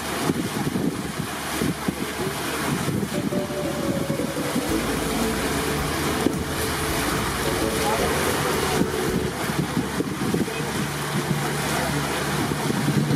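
A boat under way: a motor running steadily, mixed with wind and water noise.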